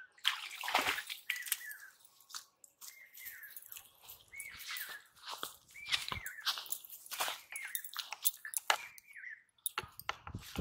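A freshly caught fish flopping and slapping wetly on grass, a string of irregular sharp knocks and rustles. The strongest come about a second in. Short falling chirps repeat behind it about once a second.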